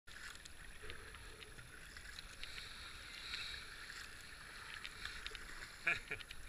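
Racing kayak being paddled: the paddle blades swish and splash through the water, with water dripping off them. There is a sharp knock near the end.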